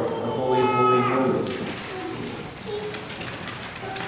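Congregation singing a sung liturgy chant; a held note ends about a second and a half in, and the singing then goes softer.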